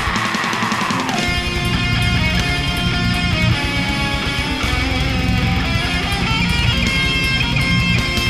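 Heavy metal music, a death metal cover: distorted electric guitar riffing over fast drums, with no singing. The bottom end drops out for about the first second, then the full band comes back in.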